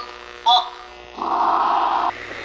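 Excerpts from 1940s radio drama openings on old recordings: a short loud pitched burst about half a second in, then a louder held sound for the last second, over a steady low hum.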